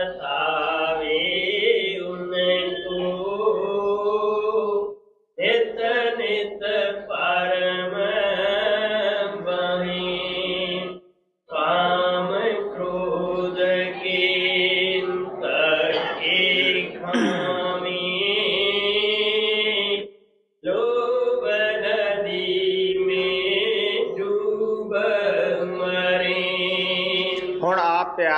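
A voice chanting a devotional hymn verse in long, held sung lines: four phrases, each broken off by a short pause.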